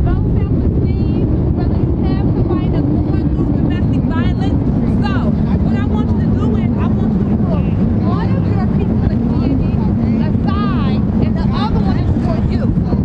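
Wind rumbling on the microphone over a steady low drone, with faint, indistinct voices in the background.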